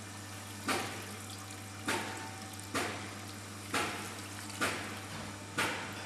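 Water pouring from a plastic jug into a tray over a copper scratchplate, rinsing off and neutralising the ammonia patina. The pour runs steadily and surges about once a second.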